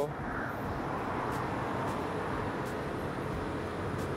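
Steady urban background hum with no distinct events, like distant traffic and city noise heard outdoors at night.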